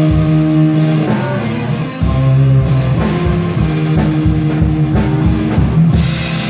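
A live rock trio of electric lead guitar, electric bass and drum kit playing an instrumental passage, the lead guitar holding long notes over a steady bass line and drum beat.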